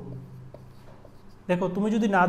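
Felt-tip marker writing on a whiteboard, faint strokes. A man's voice starts speaking about a second and a half in.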